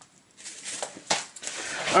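Plastic sleeve of a BCW Snap-it comic display panel rustling as a comic and cardboard backboard are slid in and out of it, with a few light clicks and taps about a second in. Speech starts near the end.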